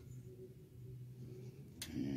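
Quiet room tone: a faint steady low hum, with a short click near the end.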